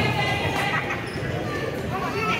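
Basketball dribbling on a hardwood gym floor, a few bounces, with voices calling out and echoing in a large hall.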